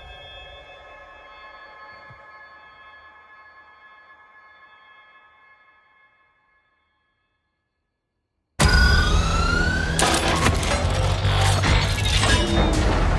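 Movie trailer soundtrack: a held musical chord fades away over about six seconds into a couple of seconds of silence, then a sudden loud burst of sound effects begins, with rising whines, sharp impacts and a deep rumble.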